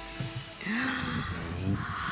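A woman's breathy gasping cry of surprise and excitement, starting about half a second in and lasting about a second, over faint background music.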